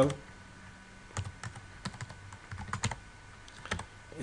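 Typing on a computer keyboard: an irregular run of separate keystroke clicks, starting about a second in.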